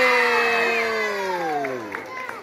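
Children's voices in a long, drawn-out 'wooow' of amazement, holding steady and then sliding down in pitch as it fades near the end, as a paper decoration is opened in front of them.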